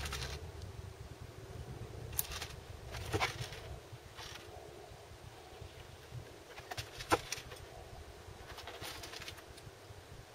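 Scattered light clicks and rustles of hand sowing: sugar beet seeds picked from a clear plastic container and set into the cells of a plastic seed tray, the sharpest click about seven seconds in. A low rumble fades away over the first two seconds.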